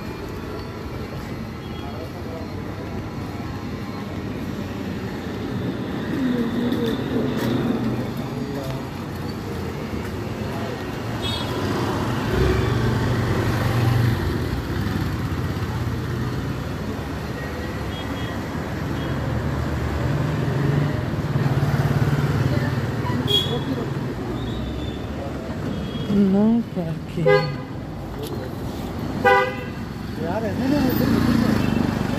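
Busy street traffic: motorcycle and car engines passing, with a rumble that swells twice as vehicles go by. Several short horn honks come in the last few seconds.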